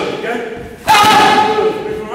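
Boxing gloves smacking into focus mitts during pad work, with a sharp hit just under a second in.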